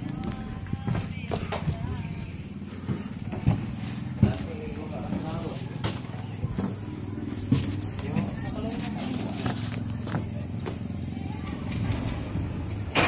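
Handheld phone microphone knocking and rubbing as it is carried around, with scattered sharp clicks, over a steady low hum and faint, indistinct voices.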